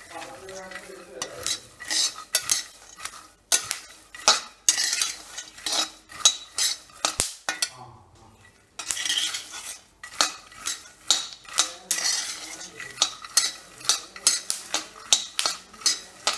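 Flat metal spatula scraping and stirring raw peanuts as they roast in a heavy black pan: irregular scrapes against the pan and the rattle of the nuts, with a short pause a little before halfway.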